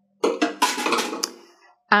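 Clatter of the immersion blender being set aside: a sudden burst of hard knocks about a quarter second in, with a ringing tail that fades within about a second and a half.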